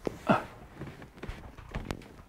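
A short strained vocal sound, then a few sharp clicks and knocks, two close together near the end, from fumbling a power plug and cord behind a refrigerator.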